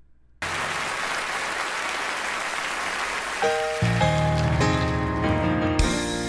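Audience applause as an even, steady noise, then piano chords entering about three and a half seconds in, with a deep bass note under them, as the playing of a Yamaha piano begins in a live performance recording.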